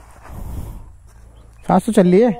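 Wind rumbling on the microphone with some rustling in the first second, then, near the end, a man's loud, drawn-out voice that forms no words.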